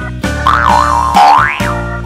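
Background music with a steady beat. Over it a cartoon sound effect wobbles up and down in pitch, then swoops upward and stops.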